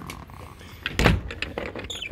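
Engine hatch of a wooden speedboat being lowered shut: one heavy thump about a second in, followed by a few light clicks and knocks.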